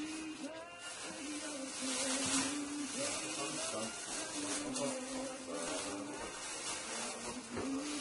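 Plastic bag rustling and crinkling as it is handled, over a continuous low hum that wavers and steps in pitch.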